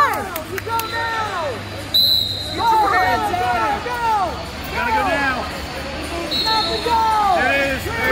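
Spectators and coaches shouting at a wrestling bout, repeated short yelled calls throughout. A brief high steady tone sounds twice, about 2 s in and again near 6.5 s.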